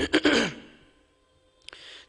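A man sighs into a close microphone, a voiced exhale that falls in pitch and fades. Near the end there is a click and a short, quick intake of breath.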